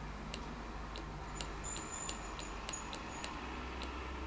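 Small tactile pushbutton on a breadboard clicking as it is pressed and released repeatedly, about ten short sharp clicks at uneven intervals. A faint high-pitched tone sounds briefly near the middle.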